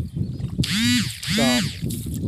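Two short calls, one after the other, each rising and then falling in pitch, over low rustling and handling noise.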